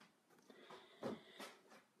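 Near silence: room tone with a few faint, light knocks around the middle.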